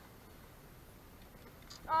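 Faint, steady background with no distinct event, then a voice exclaims "Oh" near the end.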